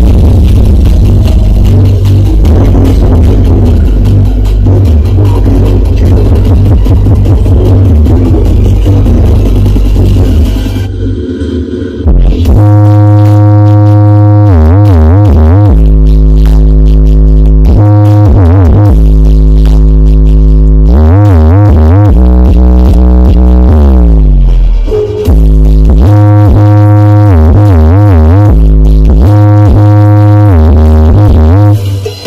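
Electronic dance music played through a large stacked sound system of 21- and 18-inch triple-magnet speakers during a sound check, heavy in bass, with wobbling synth lines. The music dips briefly about eleven seconds in and again near twenty-five seconds.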